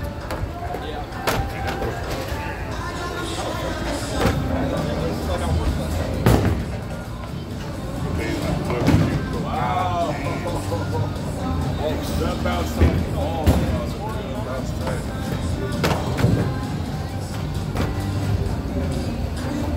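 Bowling alley din: a steady low rumble of balls rolling on the lanes and several sharp crashes of pins being struck, with music and chatter underneath.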